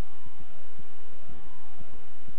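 Steady hiss with faint whistling tones that glide up and down, crossing each other, about every second and a half.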